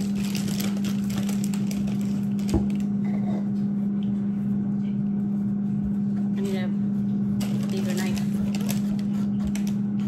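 Knife peeling the skin off a jicama, with repeated short scraping strokes, over a steady low hum. There is a single knock about two and a half seconds in.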